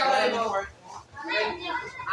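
Voices of onlookers around a pool table talking and calling out, in two bursts with a short lull in the middle.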